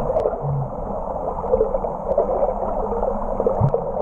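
Muffled underwater water noise through an action camera's waterproof housing: a steady rushing of water with a couple of short low bumps.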